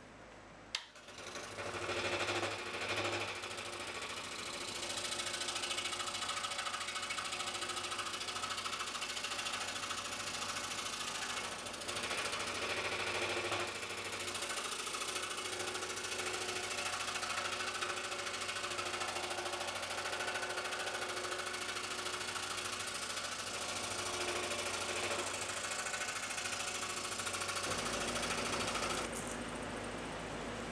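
Scroll saw running, its blade cutting through a block of very hard plum wood. The sound starts about a second in with a click and runs steadily until just before the end.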